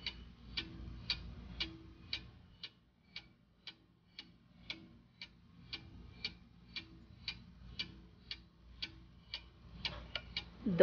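Clock-ticking sound effect marking a countdown timer: a steady, faint tick about twice a second.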